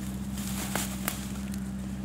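A steady low hum under a faint hiss, with two faint clicks about a second in.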